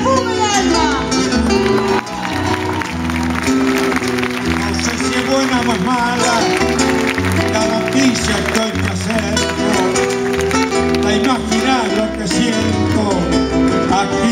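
An ensemble of acoustic guitars plays an instrumental passage between sung verses: plucked melody lines and chords over a moving bass line.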